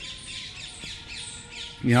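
Many birds calling and chirping at once in the trees, a busy, continuous chatter of short high calls.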